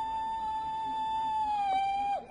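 A high-pitched human cry held as one long wail, dipping slightly in pitch near the end.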